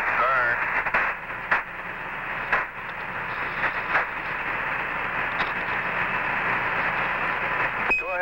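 Open radio channel of the Apollo 11 air-to-ground communications loop: a steady, narrow-band hiss of static with occasional clicks between transmissions. A short high beep sounds near the end as Houston keys up to speak.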